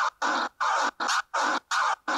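Looped DJ scratch sample chopped in and out by the Numark Mixtrack Pro FX's Fader Cuts pad set to a one-click flare, an automatic crossfader-style cut. The sound comes in short bursts with hard silent gaps between them, nearly three a second.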